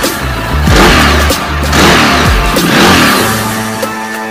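Ducati 848 Evo's V-twin engine revved twice, loud bursts about a second in and again around two to three seconds in, over electronic background music.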